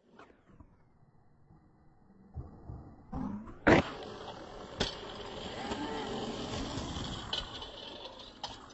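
Skateboard trick off a concrete ramp obstacle: after a near-silent start, a few knocks and one loud clack of the board landing on the concrete just before halfway, then another knock and the wheels rolling steadily over the ground.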